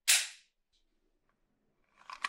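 A single sudden, bright burst of noise right at the start that dies away in under half a second, followed by a faint tick.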